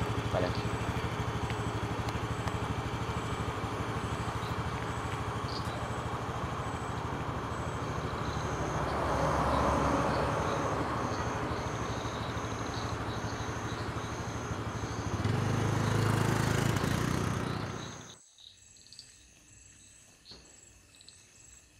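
A motor scooter's small engine idling steadily, with a passing vehicle swelling louder about nine to ten seconds in. About fifteen seconds in the engine grows louder for a few seconds, then the sound cuts off sharply, leaving faint regular insect chirps.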